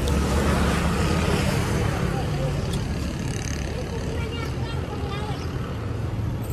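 Steady low rumble of outdoor street noise, a little louder in the first second or two and then easing, with faint voices in the background.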